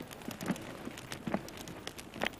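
Faint rustling and scattered small clicks, with two short, soft voice sounds about half a second and a second and a half in.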